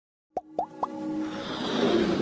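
Animated logo intro sting: three quick pops, each a short upward blip, about a quarter second apart, followed by a swelling riser that builds toward the intro music.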